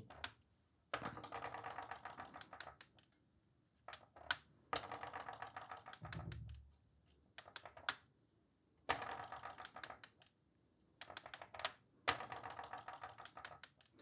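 Steel marbles rolling along a wooden marble-divider track, making faint, rapid clicking as they run over its row of channel holes. There are four separate runs of a second or two each, with a soft low thump about six seconds in.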